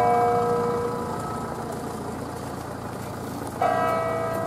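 Two strokes of a bronze church bell from an eight-bell ring cast by Ottolina in 1951, several seconds apart. The first rings out and fades over the first second, and a second stroke sounds near the end and begins to ring.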